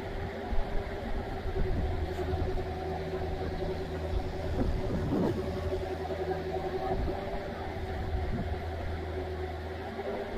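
Compact hydraulic excavator running as it digs: a steady low engine hum with a held whine, briefly rising and falling in pitch about halfway through as the machine works.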